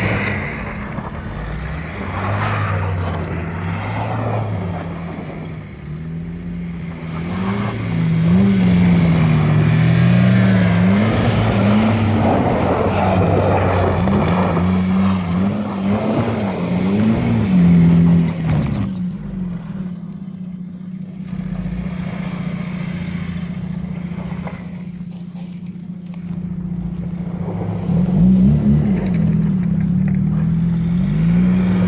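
Mercedes Sprinter 315 CDI van's four-cylinder diesel engine revving up and down again and again as the van is drifted on snow. It settles to steadier running for several seconds past the middle, then revs again near the end.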